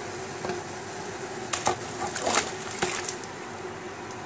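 Peeled tomato pieces tipped from a bowl into a pot of boiling tomato juice, landing with several wet plops and knocks between about a second and a half and three seconds in. A steady hum from the induction cooktop runs underneath.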